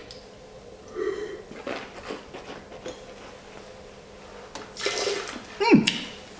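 Red wine being sipped from a glass during a tasting, with quiet mouth and glass sounds and a louder slurp about five seconds in as air is drawn through the wine.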